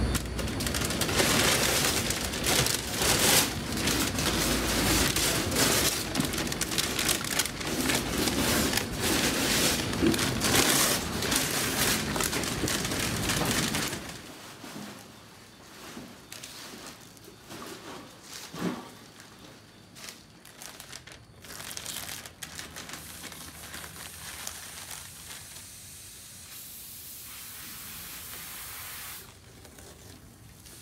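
Masking paper and tape being torn off a vehicle and crumpled up: dense rustling, crinkling and tearing for the first half, then quieter, scattered pulls. A faint steady hiss comes in near the end.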